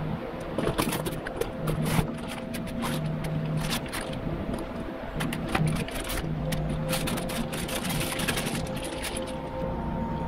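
A new Walbro 255 fuel pump being unpacked by hand: a cardboard box opened and the pump's plastic packaging rustling and crinkling, with many small clicks and taps throughout.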